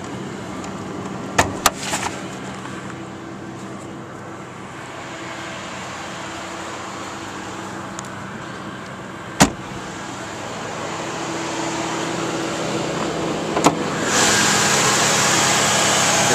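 1997 Mercury Grand Marquis 4.6-litre V8 idling steadily, broken by a few sharp clicks and clunks: two just over a second in, a loud one midway and another near the end. For the last couple of seconds the engine gets louder and hissier.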